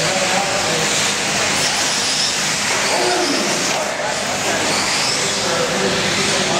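1/8-scale electric RC buggies racing on a dirt track, their motors making a high whine that rises and falls as they accelerate and brake, over the babble of voices.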